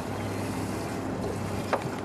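Steady wind and water noise aboard a small fishing boat, under a low steady hum, with one sharp click near the end.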